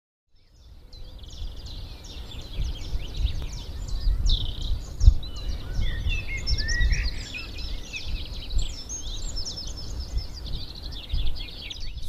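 Many small birds chirping and calling at once in quick, overlapping twitters, over a steady low outdoor rumble with one thump about five seconds in. The sound fades in during the first second.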